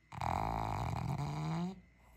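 A sleeping pug snoring through her nose: one long snore of about a second and a half, its pitch rising toward the end.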